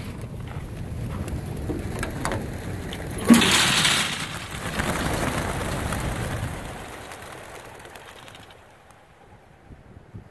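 A large flock of racing pigeons taking off from a transport trailer: a mass of clattering wingbeats that swells after a loud bang from the trailer about three seconds in, then fades over the last few seconds as the flock flies away.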